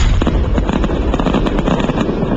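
Fireworks going off, starting abruptly as a loud low rumble with dense crackling all through.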